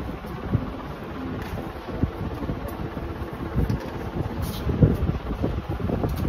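Steady low rumble of moving air on the microphone, with a few soft knocks scattered through it.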